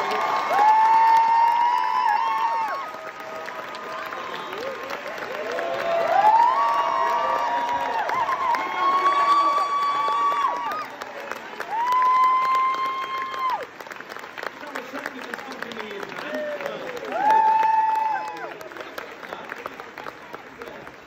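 Theatre audience applauding and cheering, with long, high whoops rising above the clapping several times.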